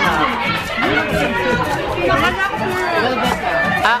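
Several people chattering at once, voices overlapping, with music in the background.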